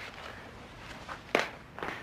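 Footsteps: a few sharp steps in the second half, the clearest about a second and a half in, over faint room tone.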